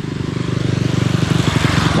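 Motorcycle engine passing, running with a fast, even beat that grows louder.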